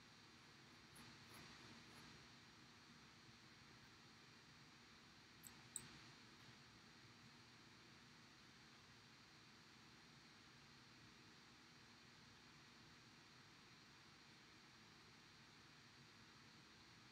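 Near silence: faint room hiss, with two brief small clicks about five and a half seconds in.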